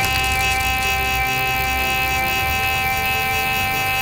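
Fox Mini Micron X carp bite alarm sounding one long, steady, unbroken high-pitched tone, the continuous note of a run with line pulling steadily over the roller wheel. Soft background music plays beneath it.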